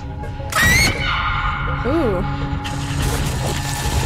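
TV drama soundtrack over a low droning score. About half a second in comes a sudden loud shriek that rises in pitch, then sustained high tones, with the mechanical scratching of a chart recorder's pen tracing brain activity.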